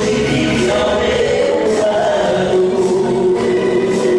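Two men singing a gospel song in duet through microphones, with musical accompaniment underneath; a long note is held through the second half.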